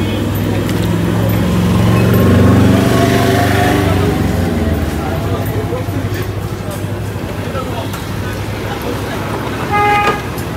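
Roadside traffic: a motor vehicle's engine passes close by, growing louder to a peak two or three seconds in and then fading. A short horn toot comes near the end.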